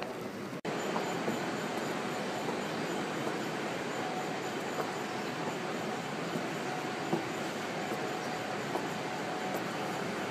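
Steady outdoor background noise, an even rushing hiss with no clear events, which cuts out briefly just under a second in and then resumes.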